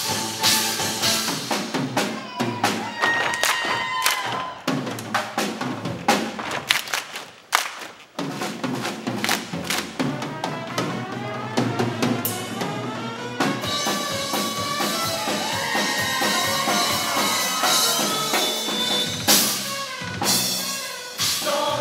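Instrumental break of a jazz number played by a live band with a drum kit: sharp drum and cymbal hits through the first half, a short drop in volume near the middle, then the band comes in with sustained, sliding notes and a loud hit near the end.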